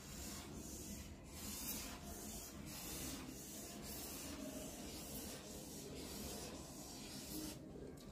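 Marker pen rubbing and squeaking faintly on a whiteboard as a wave is drawn in quick up-and-down strokes, about two strokes a second.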